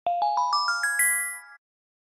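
A short rising run of bell-like chime notes, about seven notes in under a second, each ringing on over the next. The notes fade and stop about a second and a half in.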